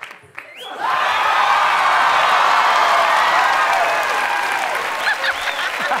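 Studio audience breaking into applause about a second in, after a brief hush, with voices calling out over the clapping.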